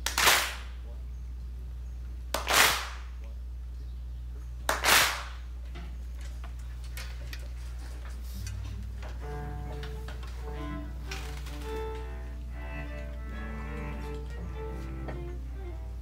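Three loud group hand claps, many players clapping together so that each clap is slightly smeared, about two seconds apart, over a steady low drone. From about nine seconds in, cellos play layered sustained notes.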